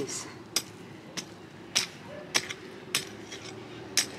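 Metal hand hoe chopping into hard clay soil: about seven evenly spaced strikes, a little more than half a second apart.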